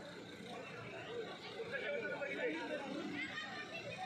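Background chatter: several people's voices talking, not close to the microphone.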